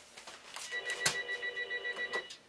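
Telephone bell ringing in a rapid pulsing trill that starts a little way in, with one sharp click about a second in.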